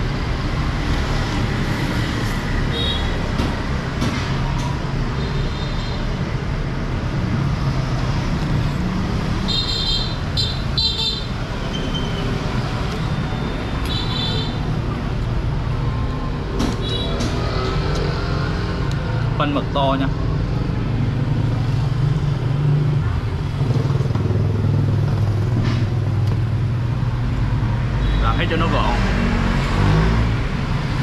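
Steady road traffic rumbling past, with several short horn toots in the first half and voices in the background.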